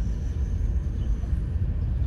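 Steady low rumble of a car being driven: engine and road noise.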